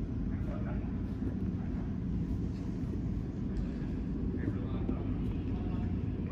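Ambience of an indoor soccer game: a steady low rumble through a large turf arena, with faint distant shouts and voices of players.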